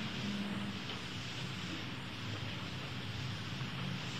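Steady hiss and low hum: the noise floor of an old tape recording of a lecture hall, with no distinct sound event.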